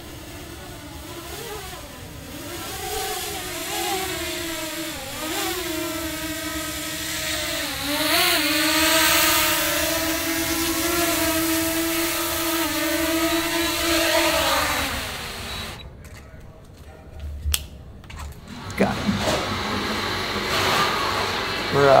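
Small quadcopter drone's propellers whining as it hovers and comes down to land, the pitch wavering and briefly rising partway through. About two-thirds of the way in, the whine drops in pitch and stops as the motors spin down.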